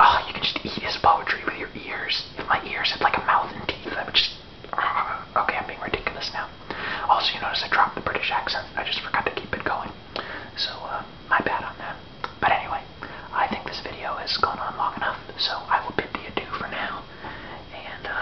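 A man speaking in a whisper, a steady run of breathy, unvoiced syllables.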